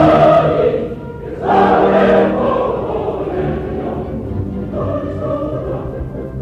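Opera chorus singing with orchestra in a live performance, heard distantly from far back in the hall. A loud chord at the start dips briefly, swells again, then settles into a softer held passage.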